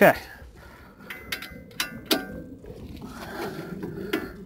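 A few light metallic clicks and clinks as a torque wrench and socket are handled on the front strut bolts, scattered over a second or so, one ringing briefly.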